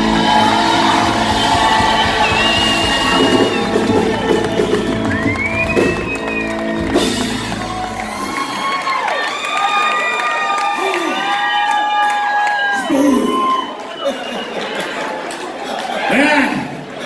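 Live country-rock band with electric and acoustic guitars playing, with the crowd cheering and whooping. The band stops about eight seconds in, and the cheers and whoops carry on.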